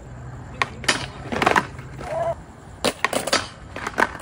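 Skateboard wheels rolling on concrete, with a series of sharp wooden clacks and knocks from boards popping and landing, the thickest cluster about a second and a half in and a few more around the three-second mark.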